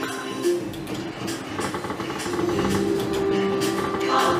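Slot machine game music: a synthesized tune with held notes over a quick, regular pulse, getting louder about halfway through.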